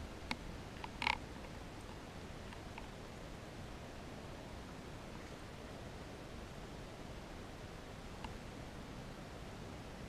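Quiet, steady background hiss, with a few faint clicks in the first second or so and one faint tick near the end.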